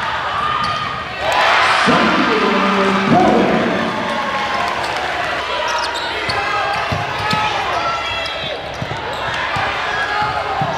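Indoor basketball game in play: voices shouting across the gym, loudest about two seconds in, with a basketball bouncing on the hardwood court and sneakers squeaking.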